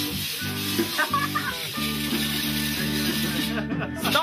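Music with steady low chords playing under the hiss of a handheld fire extinguisher being discharged. The hiss stops about three and a half seconds in.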